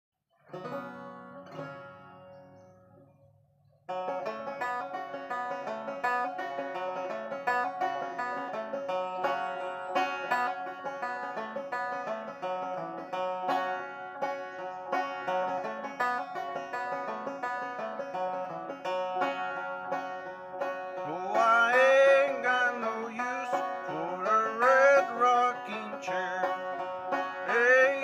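Banjo played solo: a few notes ring and die away, then steady picked playing begins about four seconds in. A man's singing voice joins over the banjo about 21 seconds in.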